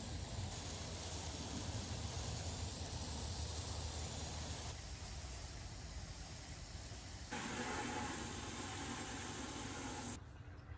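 Water from a garden hose spraying onto plants: a steady hiss that changes abruptly in tone at about five and seven seconds in.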